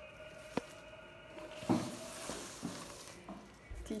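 Soft rustling of ribbon and wrapping paper as a ribbon is pulled off a wrapped gift box, with a few light clicks and a faint steady hum underneath.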